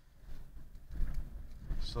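Low rumbling noise on the microphone, with a man saying "so" at the very end.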